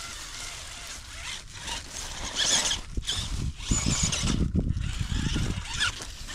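Axial Capra UTB18 1/18-scale RC crawler driving through dry fallen leaves and climbing a log pile: crackling leaves and scraping from the tyres, with a run of bumps and knocks on the wood in the second half, the loudest part.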